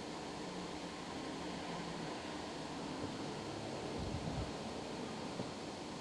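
Steady outdoor background noise, an even hiss with a faint low rumble swelling briefly about four seconds in.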